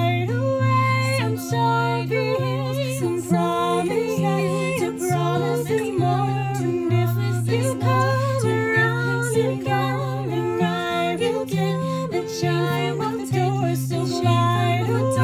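Three women singing together with acoustic guitar accompaniment, several voices on different lines over steady low guitar notes.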